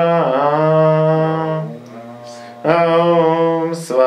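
A man chanting a mantra in long, steady held tones: two drawn-out notes with a short breath between them about halfway through.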